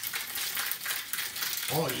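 Ice cubes rattling inside a metal cocktail shaker shaken hard by hand: a fast, even run of sharp clicks and knocks, the ice chilling the espresso martini mix.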